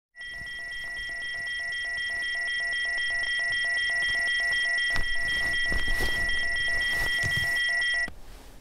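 Electronic phone alarm: a steady high tone with a pulsing beep about four times a second, growing louder, then cut off suddenly at the end. A few soft knocks sound about five and six seconds in.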